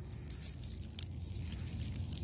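Outdoor ambience: a steady low rumble with faint rustling and a single light click about a second in.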